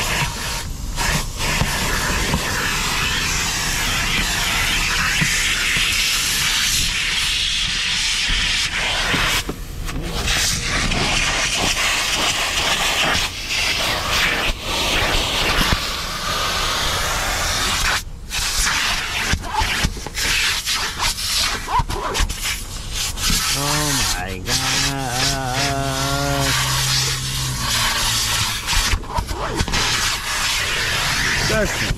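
Vacuum cleaner running steadily, its hose nozzle sucking across a car's cloth seats and carpet, the suction sound dropping and changing as the nozzle moves and catches. About three-quarters through, a wavering pitched sound, like a voice or a tone, is heard briefly over it.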